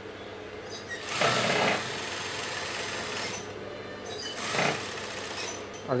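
Industrial single-needle sewing machine stitching cotton fabric in short runs, one about a second in and another near five seconds, with a steady hum between them.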